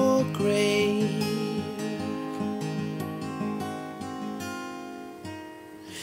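Acoustic guitar strummed alone between sung lines, its chords ringing and slowly getting quieter toward the end. A man's held sung note dies away right at the start.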